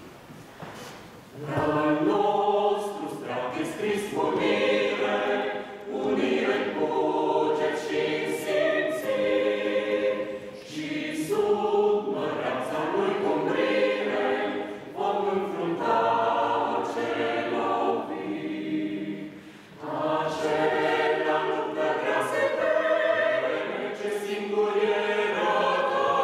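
Small mixed choir of men's and women's voices singing unaccompanied under a conductor, coming in about a second and a half in and singing in phrases with short breaks between them.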